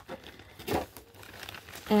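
Plastic sticker packaging crinkling as packs are handled, with one short louder rustle just under a second in.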